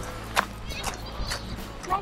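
Footsteps of people walking on a gravel path: a few short crunches over a low steady rumble.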